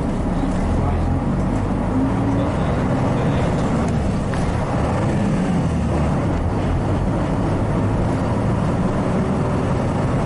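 1996 Hino Blue Ribbon KC-RU1JJCA route bus running, its diesel engine and road noise heard from inside the cabin, the engine note rising slightly a couple of seconds in as the bus moves off.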